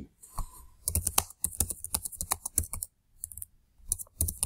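Typing on a computer keyboard: a quick run of keystrokes begins about a second in and lasts about two seconds, then a short pause and a few more keys near the end.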